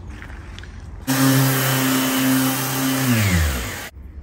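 Electric power sander starting abruptly about a second in, running at a steady high-speed hum, then switched off and spinning down with a falling pitch before stopping just before the end.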